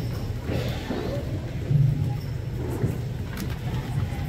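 Audience room noise in a large hall: a steady low hum with faint murmuring and rustling, and one brief, louder low thump just under two seconds in.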